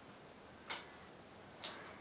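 Two soft taps about a second apart: playing cards laid down one at a time on a polished wooden tabletop.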